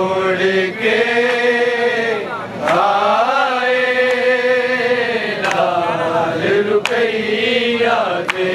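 Men's voices chanting a Punjabi noha, a Shia mourning lament, without instruments, in long drawn-out notes that waver in pitch. A few sharp knocks cut through now and then.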